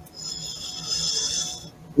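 A person breathing out audibly into a headset or webcam microphone, a soft hiss lasting about a second and a half.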